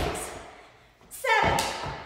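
Feet landing from jump squats on a hardwood studio floor: a thud at the start and another about a second and a half in, with a short call from the jumper's voice just before the second landing.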